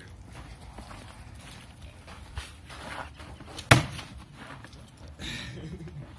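Archery in progress: one sharp, loud thwack a little past the middle as an arrow is shot from a bow at a foam block target, with a few faint knocks before it.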